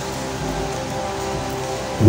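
Soft, sustained keyboard chords playing under an even hiss.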